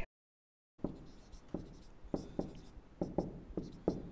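Dry-erase marker writing on a whiteboard: a quick run of taps and short scratchy strokes as the tip touches down and drags. It starts a little under a second in, after a moment of dead silence.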